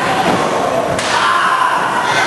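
One sharp, hard impact about a second in, from the wrestlers brawling on the floor, over a steady noise of crowd voices.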